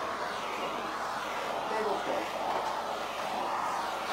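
A steady, even rushing noise, with a faint voice murmuring about halfway through.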